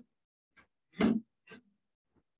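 A person's short, forceful exhalations, three in quick succession with the loudest about a second in: breathing out hard with effort during a karate drill, heard through a video-call microphone that cuts to silence between them.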